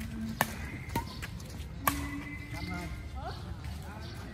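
Three sharp strikes of badminton rackets hitting the shuttlecock during a rally, under a second apart, with people's voices in the background.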